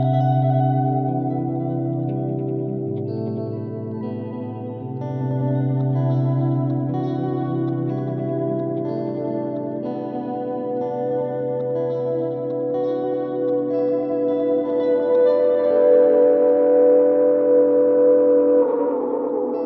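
Electric guitar looped through a Strymon Volante magnetic echo pedal in sound-on-sound mode: layered sustained notes with the multi-head delay repeats turned up, so each phrase echoes and stacks on the loop. The texture grows louder and denser near the end.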